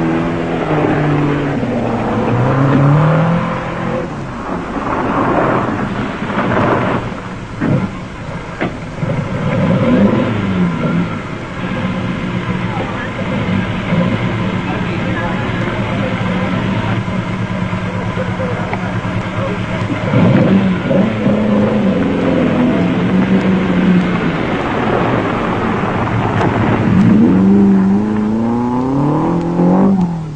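Rally car engines revving hard through the gears, the pitch climbing and dropping again several times, with a steadier engine drone in the middle stretch.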